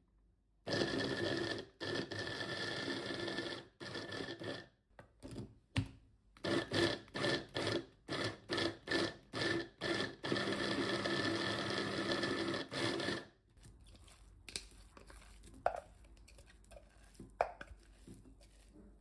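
Electric mini food chopper's motor chopping leeks: a long run, then a string of short pulses about two a second, then another steady run that stops about 13 seconds in. A few light knocks follow near the end.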